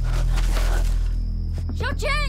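Low, droning horror-film score, with a brief hiss of rustling noise in the first second and a woman's voice starting to cry out near the end.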